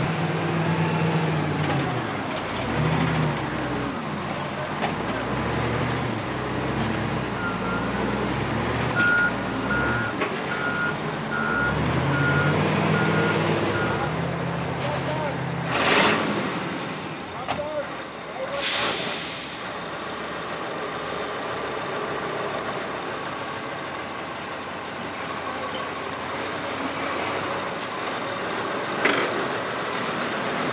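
Heavy logging machinery running: an engine revving up and down under load, with a reversing alarm beeping about once a second for several seconds. About two-thirds of the way through comes a loud hiss of air, like an air brake releasing, and then a steadier truck engine running.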